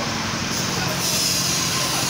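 Steady machinery noise: a machine running continuously, a low hum under an even hiss, with no pauses or changes.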